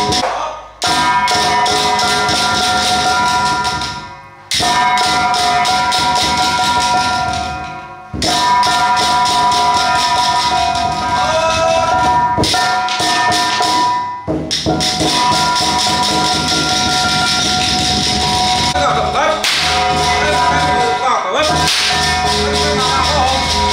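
Penghu xiaofa temple ritual percussion: a drum and metal percussion played in a fast, continuous stream of strikes over steady ringing tones. It breaks off briefly a few times, and a wavering voice joins near the end.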